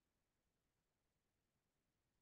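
Near silence: the audio is all but silent, likely gated between phrases of speech.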